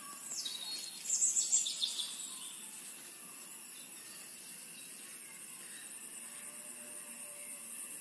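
Insects keeping up a steady high-pitched drone, with a burst of bird chirps about a second in.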